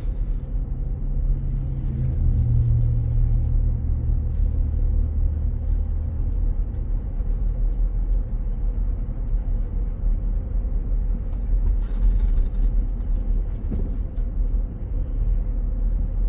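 Steady road noise of a car being driven, heard from inside the cabin: engine and tyre noise, deep and even throughout.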